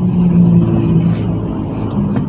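Steady low hum inside a car's cabin as it rolls slowly, engine running with the air conditioning switched on.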